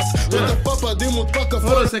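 Hip hop beat with heavy bass and a man rapping over it, stopping abruptly just before the end as the playback is paused.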